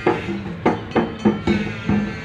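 Live drumming on hand-played drums: strikes come several times a second in an uneven rhythm, each with a short pitched ring.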